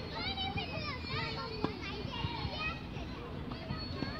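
Children's high-pitched voices shouting and calling at play throughout, with one sharp knock about one and a half seconds in.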